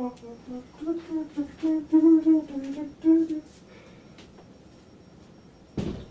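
A man humming a short tune of several notes for about three seconds. Near the end there is a single sharp knock.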